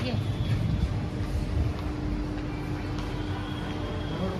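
Shopping-mall corridor background noise heard while walking: a steady low rumble with a single held hum that comes in about half a second in.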